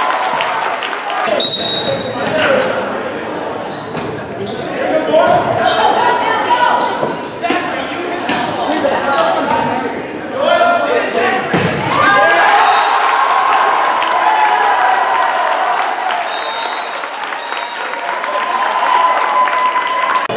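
Indoor volleyball rally in a gym: sharp hits of the ball and short shoe squeaks on the court, over players and spectators shouting and cheering, with the voices held longer from about halfway through.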